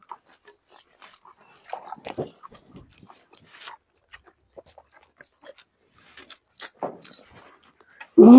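Close-up eating sounds of people eating chicken curry by hand: chewing and biting, with scattered soft clicks and mouth smacks.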